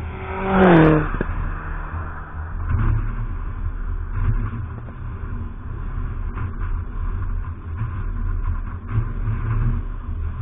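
A race car passes close by at speed about a second in, its engine note dropping sharply in pitch as it goes past. A steady low rumble follows.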